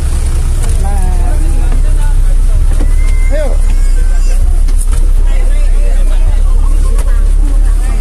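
A bus's engine running at idle as a steady low rumble, with scattered voices over it.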